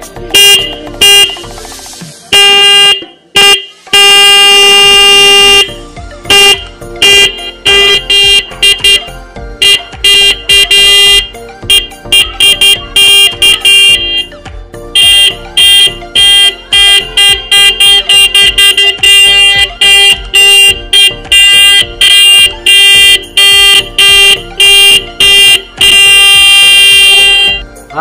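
Bicycle-mounted electric disc horn sounding a loud, steady high-pitched tone, worked from a handlebar switch in rapid short honks, with a few long blasts near the start and near the end.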